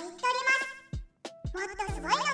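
A high-pitched, cartoon-like voice speaking Japanese narration, with a short pause just after the middle, over light background music.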